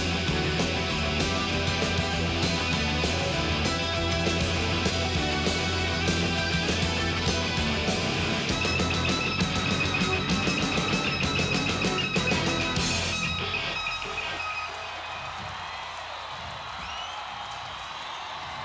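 Live hard-rock band with electric guitar, bass guitar and drums playing the last instrumental bars of a song, which stop about thirteen seconds in. The crowd cheers and applauds after the band stops.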